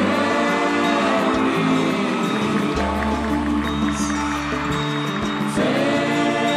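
Live Celtic folk band playing an instrumental passage: sustained melody lines over a steady drum beat.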